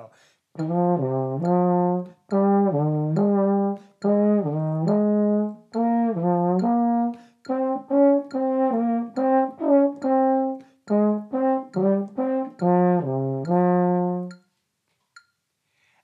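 Baritone horn playing a short melodic exercise in cut time, using B-flat, E-flat, A-flat and D-flat. It plays crisply tongued notes in short phrases, with brief breaths between them. The playing stops near the end.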